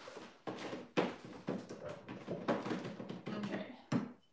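Indistinct low talking along with handling noise as a painted ceramic jar is worked over at a table. There is a sharp knock about a second in and another just before the end.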